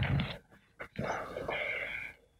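Sheets of paper rustling as they are handled and turned over, with a couple of faint clicks a little under a second in and a steadier rustle through the second half.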